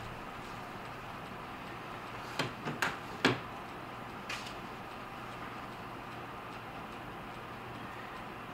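A few short, light clicks and knocks, four of them over about two seconds, from a katana being handled and set down, over a steady low hum.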